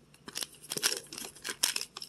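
Long paper till receipts rustling and crinkling as they are handled and flipped over, a string of irregular crackles.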